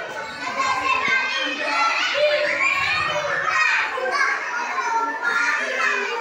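Many young children talking and calling out at once, a continuous babble of high-pitched voices.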